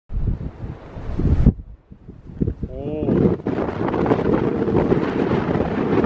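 Strong coastal wind buffeting the microphone in gusts, with a brief lull about a second and a half in before it builds up again and stays strong.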